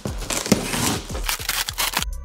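Plastic stretch wrap and cardboard crinkling, tearing and scraping in a quick run of crackles as a wrapped box is slit along its seam and pulled open, with one sharp crack about half a second in.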